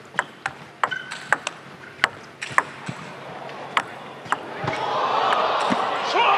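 Table tennis rally: the ball clicks sharply off the rackets and table in quick, irregular hits. Near the end, after the last hit, the crowd rises into cheers as the point is won.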